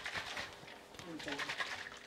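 A little stock sloshing and splashing inside a lidded glass jar as it is shaken fast, fading out about halfway through.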